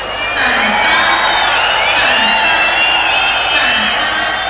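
Arena crowd shouting and whistling, getting louder about a third of a second in, as the marks come up. The audience is upset with the scoring.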